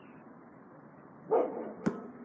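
A basketball bouncing on an outdoor court: one sharp bounce near the end, after a short, louder burst with some pitch to it a little over a second in.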